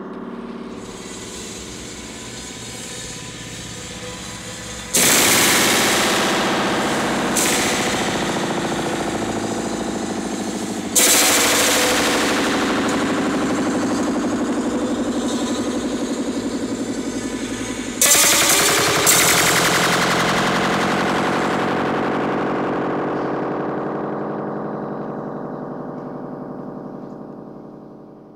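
A long steel wire stretched over a model train track, plucked by a bolt on the passing locomotive's pantograph as the wire slips from groove to groove, and heard through a small amplifier like a long guitar string. Five sharp plucks about 5, 7, 11, 18 and 19 seconds in, each ringing on with many overtones and dying away slowly; the last ringing fades out near the end.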